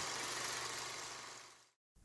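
The dying tail of a channel-intro sound effect: a rumbling wash of noise with a low hum underneath, fading away to silence about three quarters of the way through.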